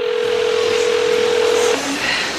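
A steady single-pitch telephone tone, held for nearly two seconds and ending with a short lower tone, over the background noise of a busy indoor space.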